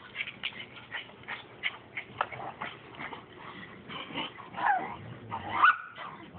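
Dogs playing in snow: a run of short scuffs and clicks, then near the end two brief whining yips, the second one rising in pitch and the loudest.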